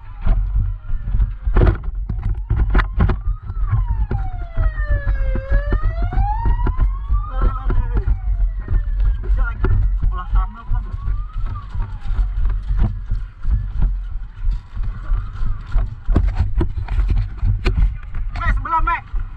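Emergency vehicle siren wailing, its pitch sweeping slowly down and up again several times, over a heavy low rumble and knocks from the camera being carried on foot.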